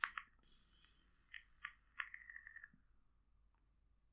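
Faint clicks, then a thin hiss and a scatter of soft crackling pops from a vape device being drawn on, stopping after about two and a half seconds.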